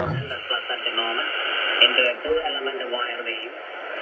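Single-sideband voice from the 40-metre amateur band, received in LSB mode with a 3 kHz filter and heard through the ATS25X1 receiver's small speaker: thin, narrow-band speech. The receiver is not making its earlier whining noise, and the sound dips for a moment near the end.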